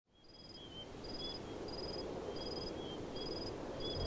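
Crickets chirping in an even rhythm, about three chirps every two seconds, over faint outdoor background noise, fading in from silence.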